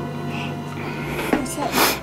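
Spatula stirring and scraping thickening cookie dough in a plastic mixing bowl, a few rough scrapes in the second half, the loudest just before the end.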